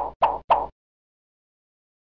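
Three short pop sound effects, about a quarter second apart, from an animated end-card graphic.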